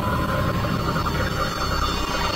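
Mechanical clicking and whirring sound effect for an animated logo, with a whirring tone that rises and then holds steady.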